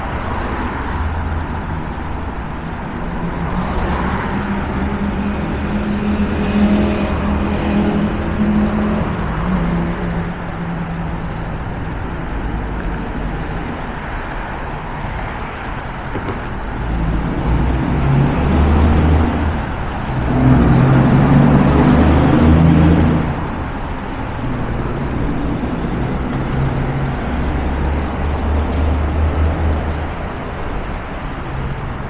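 Continuous road traffic: cars on the bridge roadway over the steady drone of freeway traffic below. Two louder vehicle passes with an engine hum come through, one a few seconds in and one past the middle.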